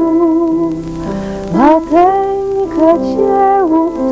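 A woman singing a slow lullaby to upright piano accompaniment, her voice sliding up into long held notes.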